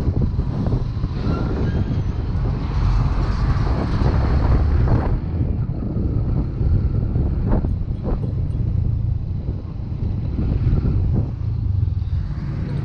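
Motorcycle running along a road, its engine under steady wind noise on the rider's microphone.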